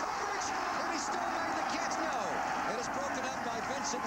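Stadium crowd noise: many voices shouting and cheering together at a steady level while a long pass is in the air during a college football game.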